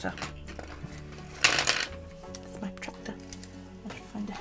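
Small objects being handled and clattering on a desk, with a brief loud rattle about one and a half seconds in, over faint background music.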